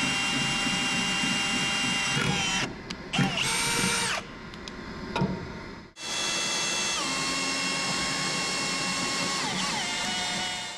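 Cordless drill boring through steel plate with a step bit, its motor whining in three runs: about two and a half seconds, a short burst around the middle, then a long run from about six seconds in. The whine steps down in pitch twice in that last run as the bit loads up in the steel.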